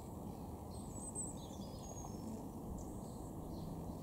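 Steady low outdoor background noise, with a few faint, high, thin bird chirps about a second in and again around two seconds.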